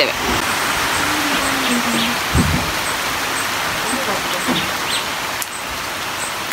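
Steady rain falling on the surrounding foliage and ground, a constant hiss.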